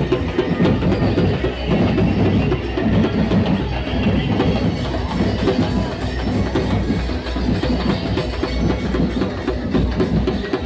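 Loud DJ music from a street sound system, with a fast, heavy drum beat and strong bass.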